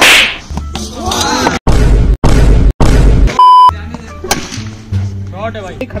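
Edited soundtrack of added sound effects. It opens with a loud sharp burst, then has a run of heavy, bass-laden music chopped by abrupt dead silences, and a short, high, steady beep about three and a half seconds in. Voices follow over background music.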